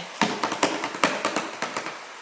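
Fingers drumming on the top of a cardboard box: a quick run of light taps, about six or seven a second, growing fainter toward the end.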